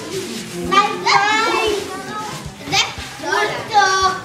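Young children's high voices calling out and chattering, with pitch rising and falling.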